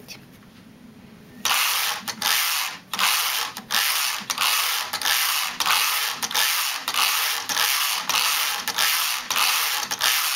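Domestic knitting machine's carriage pushed quickly back and forth over the metal needle bed, a rattling scrape with each pass, about a dozen even passes starting a second and a half in, knitting a three-stitch cord.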